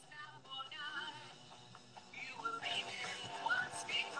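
A TV show's opening theme, music with a singing voice, playing fairly quietly in the room and growing louder in the second half.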